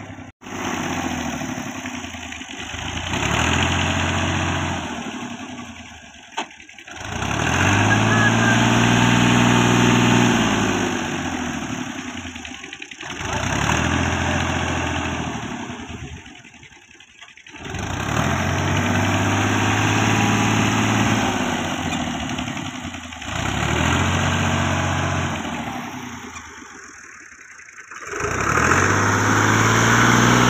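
Fiat tractor's diesel engine revving hard, stuck in deep mud, in several bursts of a few seconds each. The pitch climbs and sags in each burst as the engine strains under load, with short breaks between them.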